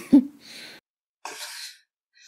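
A person's mock coughs, put on to mask a film title: a short voiced cough right at the start, then a faint breathy one and a louder breathy cough about a second and a half in.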